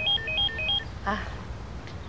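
Mobile phone ringtone: a quick rising three-note electronic figure, repeated about three times a second, that stops about a second in.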